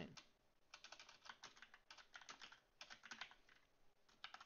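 Faint typing on a computer keyboard: short bursts of quick keystrokes as a line of code is corrected and retyped.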